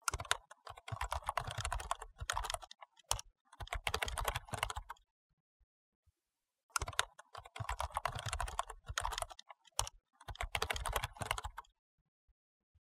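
Rapid typing on a laptop's computer keyboard, in four bursts of quick key clicks with short pauses between them.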